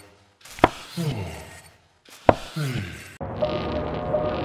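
Animation sound effects: two sharp knocks about a second and a half apart, each followed by a short ringing tone that falls in pitch. Soft music comes in near the end.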